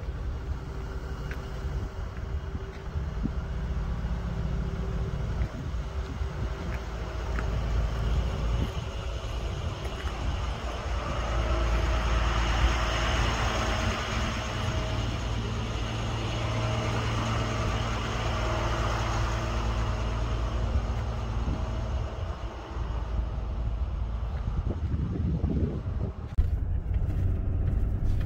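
A truck engine running steadily with a low rumble that grows louder in the middle and eases off near the end.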